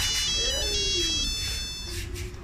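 High-pitched electronic tune of quick stepped notes, like a phone ringtone, that stops shortly before the end.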